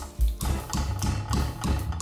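Pestle pounding chilies, garlic and ginger in a metal mortar: a run of short knocks, about three a second, the first one just after the start the loudest. Background music plays underneath.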